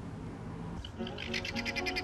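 A guineafowl calling: a rapid, harsh rattling call that starts about a second in.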